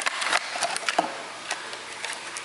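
A paperboard box being opened by hand and a clear plastic blister tray slid out of it: irregular scraping, rustling and small clicks of card and plastic, the sharpest click about a second in.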